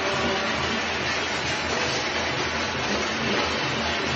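Steady din of a large crowd in the street below, with clapping, clanging of plates and shouting blended into one continuous wash of noise. This is the Janata Curfew tribute to health workers.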